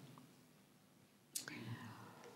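A pause in speech with near-silent room tone. A little over a second in, a short, sharp whispery sound close to a lapel microphone tails off into a faint murmur.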